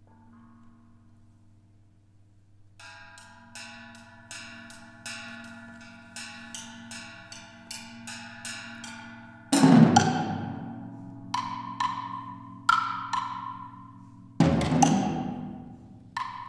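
Live percussion-duo music: faint sustained ringing at first, then bright mallet strokes on metal keyboard percussion, about two a second, each left ringing. Two much louder, deeper strokes come about halfway through and again near the end.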